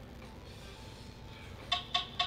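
Digital gym interval timer giving two short, sharp beeps near the end, over faint room noise: the timer switching phase.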